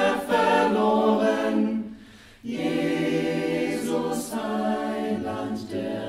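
Mixed SATB choir singing a cappella in several voice parts, with a short pause about two seconds in before the voices come back in on held chords.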